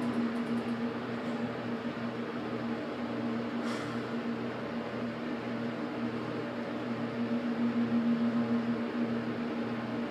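General hydraulic elevator rising, heard from inside the cab: the pump motor hums steadily throughout, getting a little louder near the end, with a single brief click a little under four seconds in.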